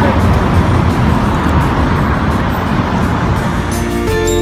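City street traffic noise: a steady rumble and hiss of passing cars. Music starts just before the end.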